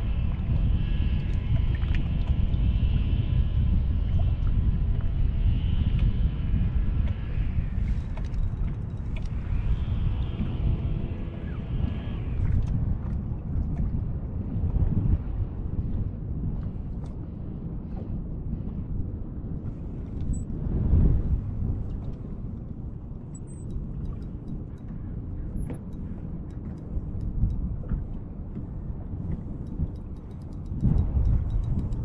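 Wind buffeting the microphone on a boat, a low rumble throughout, with a steady multi-tone whine from the electric trolling motor that stops about twelve seconds in.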